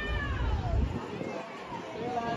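A long, high-pitched cry from a person that falls in pitch and fades out about a second in, over crowd noise.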